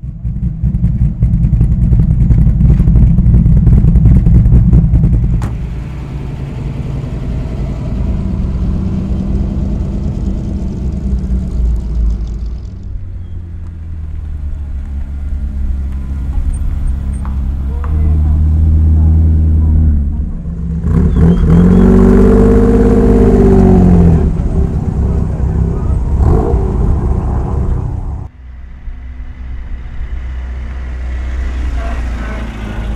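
Several sports and classic car engines running and revving as the cars pull away one after another. The loudest stretches come in the first five seconds and from about 21 to 24 seconds in, where one engine revs up and back down.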